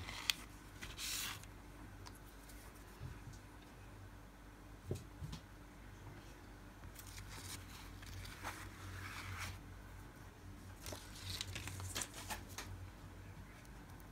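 Faint, short scraping swishes of a plastic scraper drawn across a metal nail-stamping plate and a clear jelly stamper pressed and rolled on it, with a couple of light taps.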